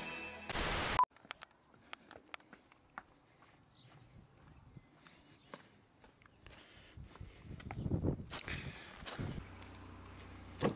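Intro music cuts off about a second in. Then come faint scattered clicks and handling noise from a camcorder being carried around a parked car, growing into louder rustling movement near the end.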